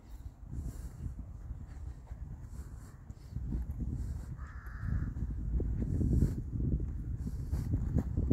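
Wind buffeting the microphone outdoors, an uneven low rumble that grows stronger in the second half, with a short harsh bird call about halfway through.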